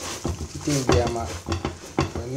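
A metal spatula scraping and pressing a frying egg omelette in a pan, with the oil sizzling underneath and clicks of the spatula against the pan. A person's voice speaks briefly through the middle and is the loudest part.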